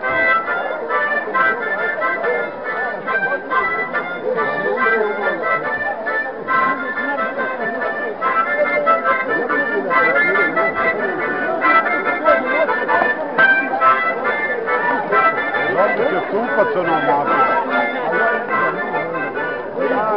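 Accordion playing a folk dance tune in short repeated rhythmic phrases, with crowd voices talking over it.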